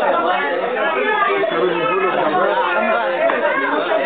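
Many people talking at once in a crowded room: steady, overlapping party chatter.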